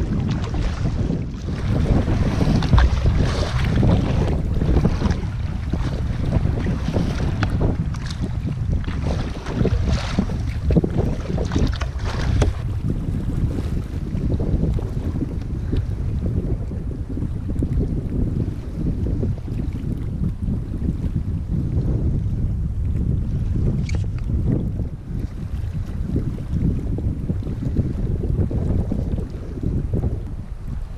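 Strong wind buffeting the microphone with a steady low rumble, over choppy lake water splashing around a canoe. The splashing is busiest in the first twelve seconds or so, then the wind rumble dominates.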